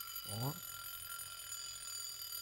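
Mechanical alarm of a vintage Orient alarm wristwatch going off, a steady high-pitched buzz.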